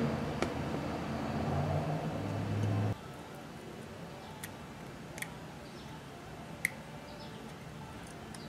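Hobby knife carving a small wooden tadpole model by hand, with a few faint sharp clicks as chips come off. For the first three seconds a low steady hum covers it, then cuts off abruptly.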